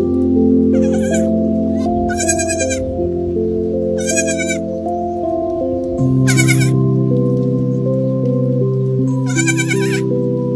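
A baby goat bleating five times in short, high, wavering cries, over background music of sustained notes.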